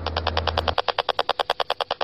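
Handheld RF meter's speaker giving a rapid, even train of ticks, a little over ten a second: its audio rendering of a pulsed microwave signal. A low hum stops under a second in.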